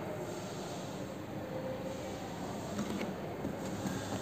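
Faint, steady background noise of the recording: low hiss and rumble room tone, with no distinct sound event.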